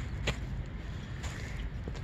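Low, steady rumble of wind on the microphone, with a couple of faint clicks, one shortly after the start and one near the end.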